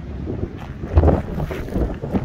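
Gusty wind buffeting the camera microphone: an uneven low rumble that swells in a strong gust about a second in.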